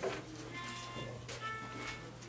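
Two short, thin, steady pitched notes, one after the other with the second a little higher, sounded to give the starting pitch for an a cappella hymn. A steady low hum sits underneath.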